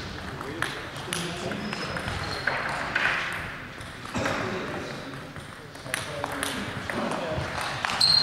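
Table tennis ball clicking off the table and bats: a series of sharp, irregularly spaced clicks over the murmur of voices.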